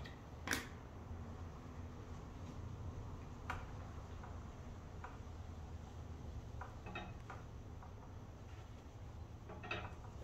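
Faint rubbing and a few short soft taps from a microfiber towel being wiped over an alloy wheel's spokes, over a steady low hum.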